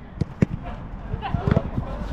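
A football being passed on grass: a few sharp thuds of boot striking ball, about a second apart, with players' voices calling faintly between the kicks.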